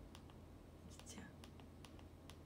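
Near silence with a low hum, broken by scattered faint clicks of TV remote buttons being pressed, and a brief soft whisper about a second in.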